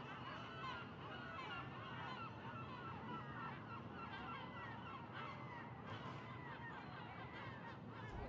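A faint chorus of many birds calling at once: short, overlapping calls that keep up without a break.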